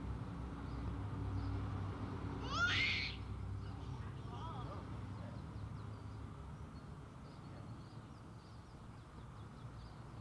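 A baby's short high squeal, rising in pitch, about two and a half seconds in, then a fainter call, over a steady low hum.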